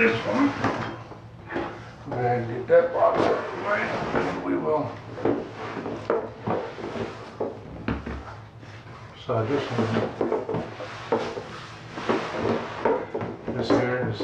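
A cardboard shipping box being lifted, turned and set against the lap, with knocks and scrapes of the cardboard.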